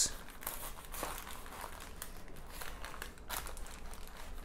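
Knife sawing through a paper-wrapped kimbap roll on a wooden cutting board, the paper wrapping crinkling in faint, irregular strokes.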